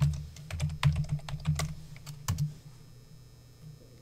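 Typing on a computer keyboard: a quick, irregular run of key clicks that stops about two and a half seconds in.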